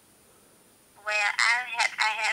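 About a second of near silence, then a woman speaking over a telephone speaker.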